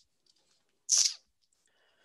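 A single short, hissy exhalation from a person, about a second in, on an otherwise near-silent line.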